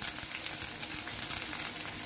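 Sliced onions and green peas sizzling in hot oil in a pan: a steady hiss with fine crackles.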